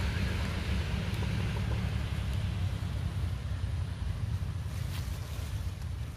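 Wind buffeting the microphone, a steady low rumble with a hiss over it, and a few faint ticks about five seconds in.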